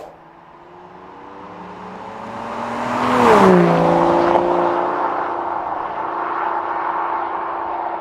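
Aston Martin DBS's V12 engine in a drive-by. The engine note grows louder as the car approaches, drops sharply in pitch as it passes about three seconds in, then holds a steady note that fades slowly as it pulls away.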